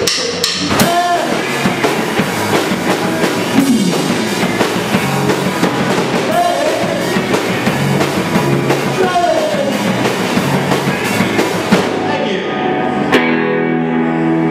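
Live rock band playing a chorus: electric guitars and a drum kit with sung vocals. About twelve seconds in the drums stop and a held guitar chord rings on.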